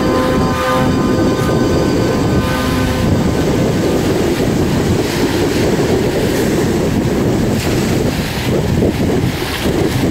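Held music notes carry on for the first few seconds and stop about three seconds in, after which gusty wind buffets the microphone with a loud rumble.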